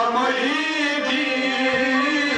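Male voices singing a Kashmiri Sufi song in long held notes over a harmonium drone, with a few soft hand-drum strokes near the end.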